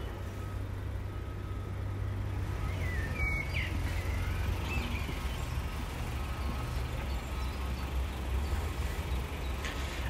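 Outdoor background of a steady low rumble, with a bird's short faint chirps about three seconds in and again near five seconds.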